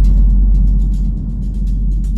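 A cinematic transition sound effect: a deep boom lands at the start and settles into a loud low rumbling drone that slowly fades, with faint light ticks above it.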